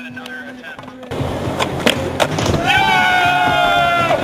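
Skateboard wheels rolling on concrete, with a few sharp clacks of the board, starting abruptly about a second in. A music track with a long held, slightly falling note comes in over it about two and a half seconds in.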